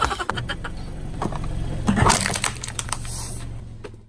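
A car tyre rolling over and crushing a toy hot-air balloon with a card basket on concrete: a run of crackles and crunches, loudest about two seconds in, over the low hum of the car's engine running. The crackling fades away near the end.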